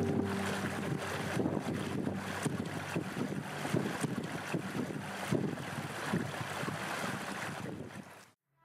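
Outdoor ambience of a mountain stream running over rocks, with wind buffeting the microphone in irregular gusts; it fades out at the end.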